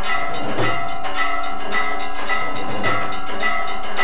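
Temple bells and metal gongs struck in a steady rhythm, about twice a second, each stroke left ringing, with a low drum beat every couple of seconds: the music played as the aarti lamp is waved.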